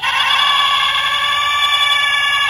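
An elephant trumpeting, played as a recorded call through a sound book's small electronic speaker: one long, loud blare that starts suddenly and holds steady.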